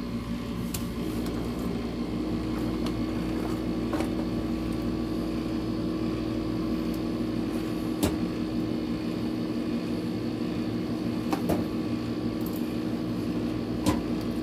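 Steady low machine hum made of several held tones, broken by a few sharp clicks, the loudest about eight seconds in and again at the end, from a computer mouse being clicked.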